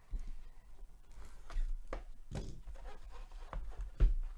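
A cardboard product box handled and opened by gloved hands, with its inner box slid out: irregular rustling, scraping and a few light knocks, with low handling bumps.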